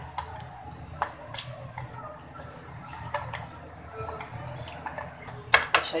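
A spatula stirring a thick frying masala in a steel pan, scraping and clicking against the metal over a steady low hiss, with a few sharp knocks on the pan near the end.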